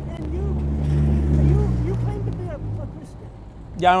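A truck driving past close by, its engine rumble swelling in the first second and a half and then fading away.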